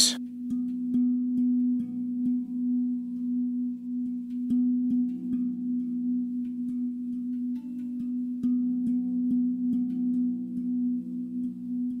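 Background meditation music: a steady, low sustained drone of held tones, like a singing bowl, shifting slightly about five seconds in.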